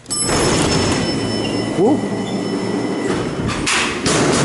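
Power-operated freight elevator doors and gate running right after a button is pressed: a loud, steady mechanical noise with rattling that starts suddenly and carries a few thin high tones.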